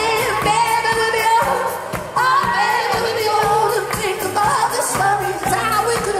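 Live rock band playing amplified through a festival PA: a sung voice over electric guitars and a steady drum beat, as heard from the audience.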